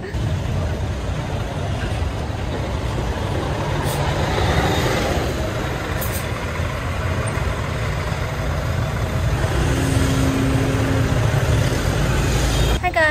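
Busy street traffic heard from an open cyclo: a steady low rumble from a bus's engine running close alongside, with motorbikes moving around it.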